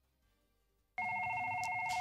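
Telephone's electronic ring: a steady trilling tone of several pitches, starting about a second in and lasting about a second.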